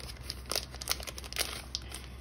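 Clear plastic packaging bag crinkling as a stack of paper and fabric ephemera pieces is handled and slid out of it. It comes as irregular short rustles.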